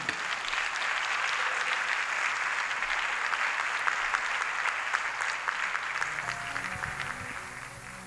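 Audience applauding, steady and then fading out over the last couple of seconds as soft instrumental music comes in underneath.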